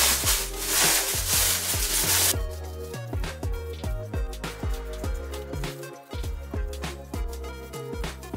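Background music with a steady beat. Over the first two seconds a loud crackling rustle of plastic wrap being pulled off, which cuts off suddenly.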